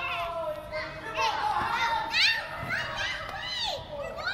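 A group of young children shouting and chattering over one another as they play, several high voices at once.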